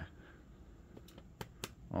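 Quiet room tone with a faint low hum, broken by two faint sharp clicks close together about a second and a half in.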